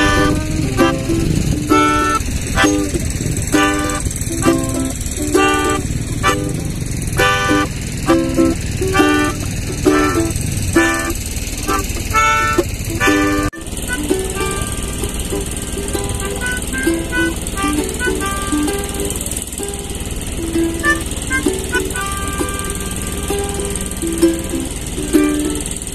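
Melodica and ukulele playing an instrumental passage together: held, reedy melodica notes over rhythmic strummed ukulele chords. About halfway through the sound breaks off for an instant and the playing resumes.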